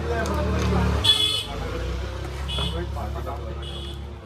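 Busy street background: a steady low engine-like rumble under distant voices, with a short high-pitched vehicle toot about a second in and two fainter toots later.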